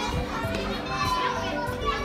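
Children playing and chattering on a playground, with a busy mix of overlapping young voices.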